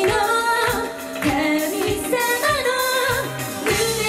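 Female idol vocal group singing a J-pop song live into microphones, with a steady pop beat underneath.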